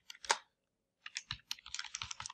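Typing on a computer keyboard: one keystroke, a short pause, then a quick run of keystrokes from about a second in.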